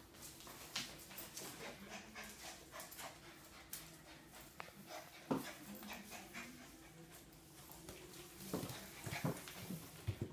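Two dogs, a Cavalier King Charles spaniel and a small shaggy puppy, playing together: faint scuffling and panting with many small clicks, and a few short, louder dog noises around the middle and near the end.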